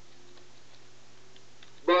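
A pause in a man's speech filled by a steady low hum of room tone, with a few faint clicks; the man starts speaking again near the end.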